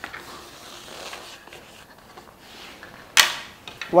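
Quiet handling sounds of cake boards and plastic fondant smoothers as a fondant-covered cake is flipped and set upright, with one short, sharp noise about three seconds in.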